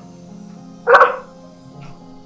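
Steady background music, with a single short dog bark about a second in.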